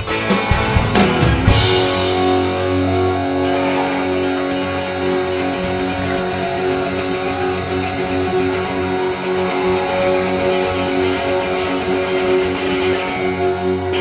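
Live rock band with electric guitars: drums and guitars play together until about a second and a half in, then the drums stop and the guitars hold one long ringing chord, the song's closing chord.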